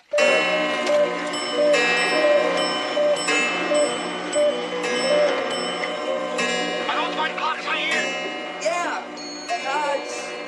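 Many clocks chiming and striking at once, their bell-like chime tunes repeating over one another in a continuous jangle.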